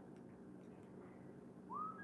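Faint room tone, then near the end one short whistle-like tone that rises in pitch.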